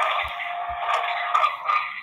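Crackling, hissing noise through a phone line, held steady with a faint hum, with a few soft thumps in the first second. It cuts off suddenly at the end.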